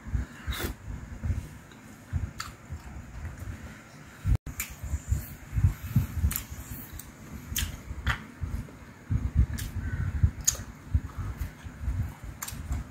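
Close-miked mouth sounds of a man eating Korean fish cake: irregular chewing and wet mouth noises, with scattered sharp clicks.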